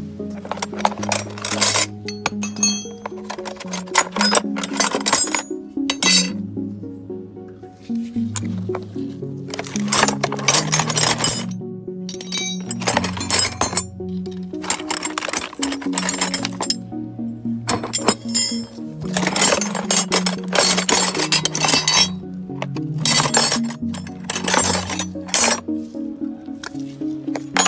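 Background music with a bass line, over bouts of metal hand tools (spanners and sockets) clinking and clattering against each other as a plastic toolbox is rummaged through.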